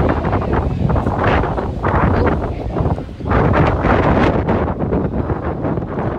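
Strong wind buffeting the phone's microphone in gusts, with a brief lull about three seconds in.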